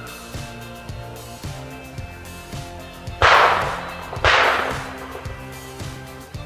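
Two shotgun shots about a second apart, each with a short echoing tail, over steady background music.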